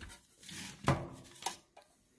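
Light handling of a small plastic bag of screws: a faint rustle, then two small clicks.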